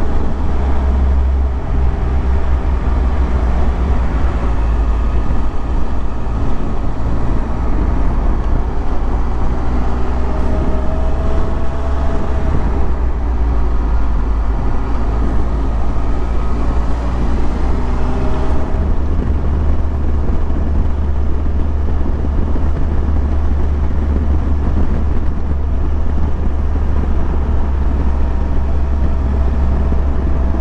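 Motorcycle engine running under way with loud, steady wind rumble on the microphone; the engine pitch rises and falls a few times through the middle as the rider works the throttle, and the low rumble eases for a stretch before building again.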